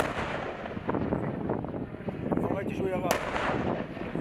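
Self-propelled howitzer firing: one sharp blast about three seconds in, trailing off in a short rumble.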